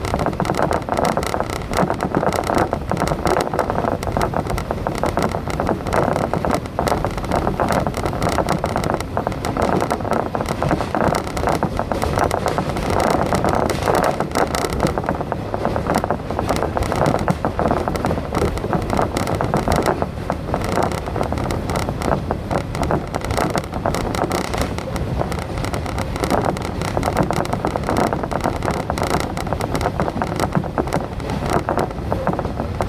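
A train running at speed, heard from on board: a steady rumble of wheels on rail with a rush of air.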